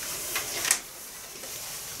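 Denim jeans being handled at the hip pocket: a soft rustle of fabric with two short clicks less than a second in, from the pocket's snap fasteners.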